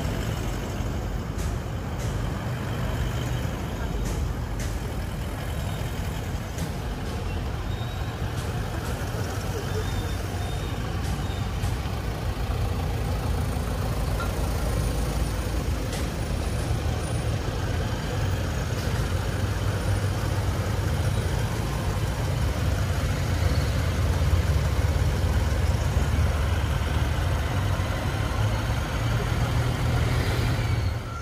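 A motorcade of large SUVs driving slowly past, a steady rumble of engines and tyres that grows somewhat louder in the last third, with voices in the background.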